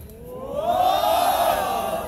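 A group of band members shouting together in one long, drawn-out call that rises and then falls in pitch.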